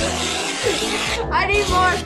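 Aerosol whipped-cream can spraying in a long hiss that stops about a second in, followed by a child's cry near the end.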